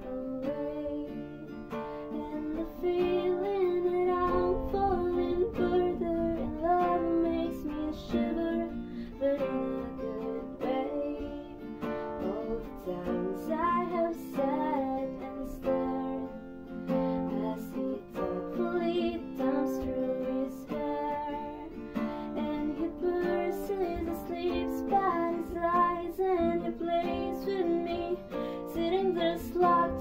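Acoustic guitar strummed and picked in a steady rhythm, playing the chords of a slow pop ballad.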